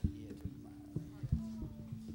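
Low held notes from a stage instrument that step down in pitch about two-thirds of the way through, with scattered knocks and thumps from the stage as the band noodles before the song.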